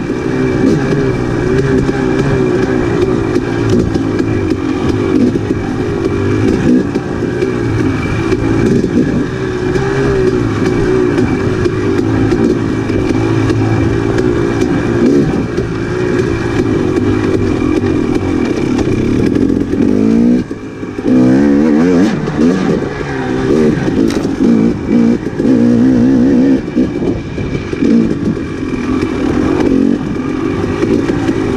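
2018 KTM 250 XC-W TPI fuel-injected two-stroke single running under load on a trail ride, revs rising and falling with the throttle. About twenty seconds in it drops off briefly, then revs back up.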